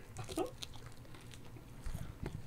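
Faint mouth noises of someone chewing, with small scattered smacks and clicks, after a short "oh" near the start.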